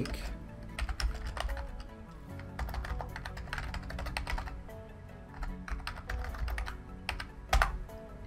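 Typing on a computer keyboard: irregular runs of quick key clicks, with a louder keystroke near the end.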